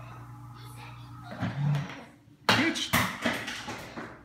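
A sharp, loud knock about two and a half seconds in, followed by about a second of clattering with several smaller knocks.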